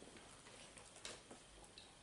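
Near silence, with a few faint, scattered ticks of trading cards being handled and laid on a tabletop.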